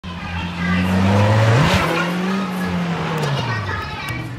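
A car engine running, its pitch rising sharply about one and a half seconds in and easing back down near the end, as when the engine is revved.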